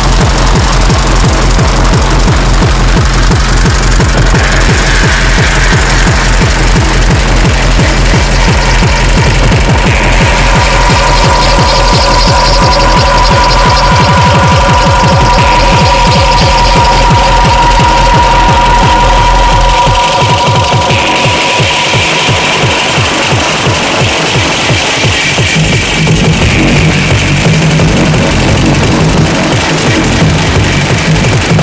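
Fast techno played as a DJ set, with a pounding kick drum and sustained synth lines; about twenty seconds in the kick drops out for a breakdown.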